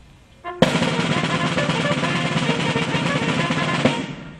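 A band's snare drum roll, starting sharply about half a second in, held evenly for about three seconds, and stopping abruptly near the end.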